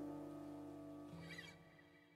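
The last notes of an acoustic guitar and fretless acoustic bass ringing out and fading away, with a short wavering high sound about a second and a half in.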